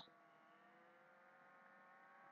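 Near silence: faint room tone with a weak steady hum.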